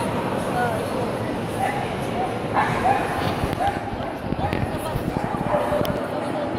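A dog giving a series of short yips and whines over the steady murmur of a crowd in a large hall.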